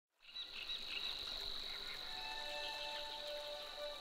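Nature ambience of short bird chirps over a steady high insect-like drone. Soft ambient music with held chords fades in about two seconds in.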